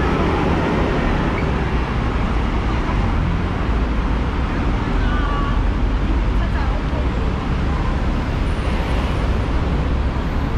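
Busy city street ambience: a steady low rumble of road traffic and buses, with the chatter of a crowd of pedestrians.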